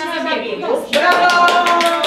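A few people clapping by hand, starting about a second in, with a woman's drawn-out voice calling over the applause.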